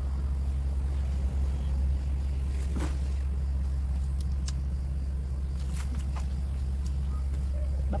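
A steady low rumble, with a few faint clicks and rustles of leaves being handled.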